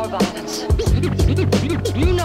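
Hip hop beat, with drums and a bassline, while records are scratched on a turntable in quick back-and-forth sweeps. The bass drops out briefly about half a second in.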